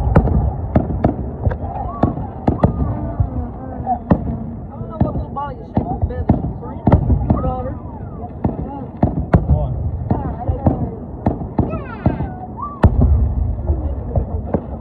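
Fireworks display: aerial shells bursting in a steady run of sharp bangs and crackles, with heavier booms at the start, about seven seconds in and near the end. Voices of onlookers are heard underneath.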